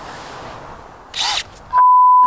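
A cordless drill runs briefly against a car key about a second in, drilling toward the immobilizer chip. Near the end a loud, steady single-pitch beep with all other sound cut out: a censor bleep over an exclamation as the drill nicks a hand.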